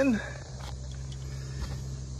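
Steady low background hum with faint outdoor ambience, after a word trails off at the very start.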